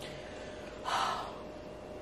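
A single short, audible breath, an exhale or gasp, about a second in, over a faint steady hum.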